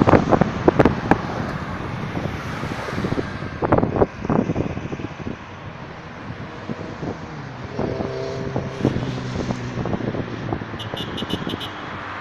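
Road traffic: cars and a minibus driving past on a multi-lane road, tyres and engines, with wind buffeting the microphone in the first few seconds. About two-thirds of the way in one passing engine's tone stands out, and near the end there is a quick run of high pips.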